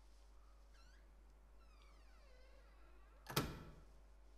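A single loud thud about three seconds in, dying away quickly, after a few faint high chirping glides.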